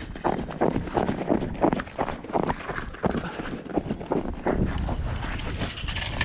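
Running footsteps on snow-covered lake ice, about three steps a second.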